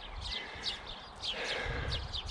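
Small birds chirping in the hedgerow, a run of short, high, falling notes repeated every fraction of a second, over a low rumble of wind on the microphone.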